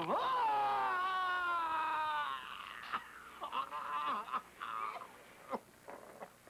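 A man screaming in pain as a dental probe is worked into a decayed tooth: one long cry that breaks out suddenly and sinks slowly over about two seconds, followed by shorter, quieter moans.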